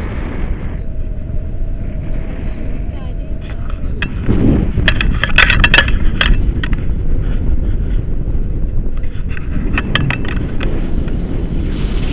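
Wind from the glider's airspeed buffeting an action camera's microphone on a selfie stick during a tandem paraglider flight: a loud, steady low rumble. A burst of sharp crackling clicks comes about four to six seconds in, and a few more near ten seconds.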